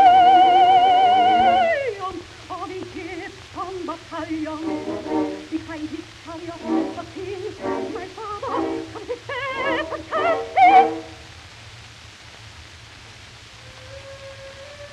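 Operatic soprano singing with orchestral accompaniment on a 1916 acoustic-era 78 rpm record. She holds a long high note with wide vibrato, then sings shorter phrases that end with a loud passage about eleven seconds in. A quiet stretch of disc surface hiss follows.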